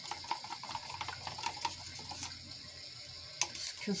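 Black acrylic paint mixed with Floetrol being stirred with a wooden craft stick in a plastic cup: irregular light scrapes and clicks of the stick against the cup, over a steady background hiss.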